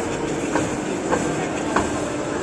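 Steady mechanical hum and hiss of a programmable paper-cutting guillotine, with a light click about every 0.6 s.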